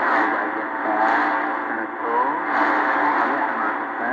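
Shortwave AM broadcast on 15.420 kHz through an ATS-20+ receiver: steady static hiss with faint pitched tones wavering and gliding underneath. The sound is muffled, with nothing above the low treble, because of the receiver's narrow 4 kHz filter.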